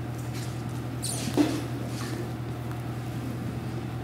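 Quiet room tone with a steady low hum, and one brief faint squeak-like sound about a second in.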